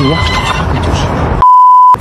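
A censor bleep: one steady, loud, pure tone lasting about half a second near the end, with the speech under it cut out.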